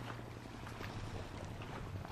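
Small cabin motorboat running at low speed, heard faintly as a low engine hum under a noisy wash of water.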